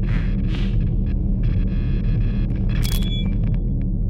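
Logo-animation sound design: a steady deep rumble under two quick whooshes at the start, then flickering electronic tones and a bright ping with a short ringing tone near three seconds in.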